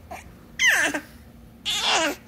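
A baby's two high-pitched squeals, each sliding down in pitch, about a second apart.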